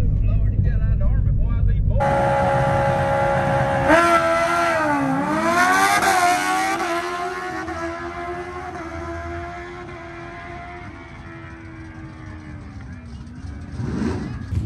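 A car engine idling, heard as a low rumble inside the cabin. After a cut, a drag car's engine is heard revving; about four seconds in it launches and accelerates down the strip, its pitch dipping and then climbing, and its sound slowly fades and drops in pitch as it goes away.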